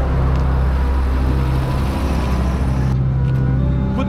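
A car driving on a street: steady engine hum and tyre noise. The higher hiss drops away about three seconds in.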